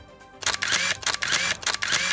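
A rapid burst of camera shutter clicks over a hiss, starting about half a second in and lasting about a second and a half: a news transition sound effect.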